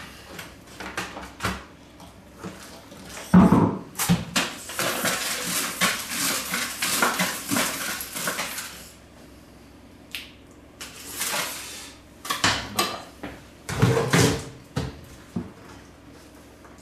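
A bristle brush scrubbing a plastic fermenter lid and bucket covered in Star San sanitiser foam, in a dense scratchy stretch from about four to nine seconds in. Hollow knocks and a loud thump of the plastic bucket and lid being handled come before and after it.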